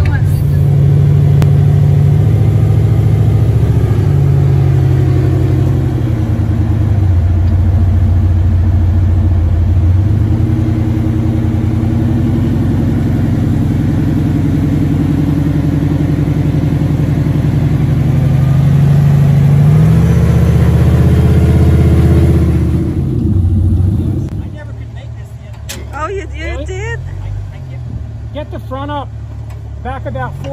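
Off-road rock-crawler engine running loud, its pitch rising and falling as it is revved over the rock. About 24 seconds in it cuts to a quieter engine running, with people's voices over it.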